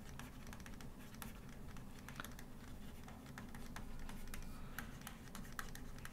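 Faint, irregular clicks and ticks of a stylus writing on a tablet, over a low steady hum.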